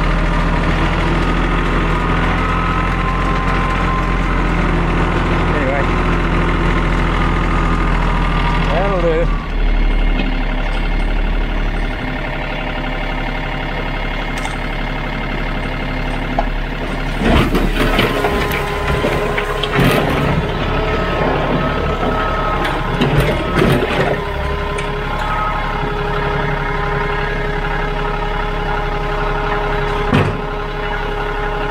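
Sub-compact tractor's diesel engine running as it tows a tipping trailer, its note changing about nine seconds in. From about seventeen to twenty-four seconds in come clattering knocks and rattles as the trailer is tipped and the load of dead branches slides off.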